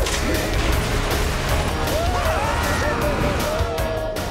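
Cartoon action sound effects: a sudden crash as the plane's hold bursts open, then a steady rush of noise as the penguins and cargo fall out of the plane, with music underneath. From about two seconds in, high gliding cartoon yells from the falling penguins.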